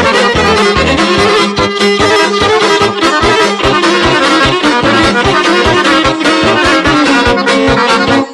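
Instrumental passage of Bosnian-Croatian izvorna folk music: a sustained melody line over a steady bass beat, with no singing.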